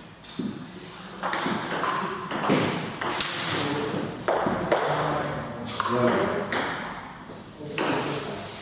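Celluloid or plastic table tennis ball clicking off the paddles and the table in a rally, a quick irregular series of sharp knocks. Voices can be heard in the background.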